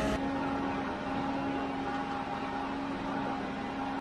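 Concrete conveyor truck's engine running steadily: an even machine hum with a constant low tone.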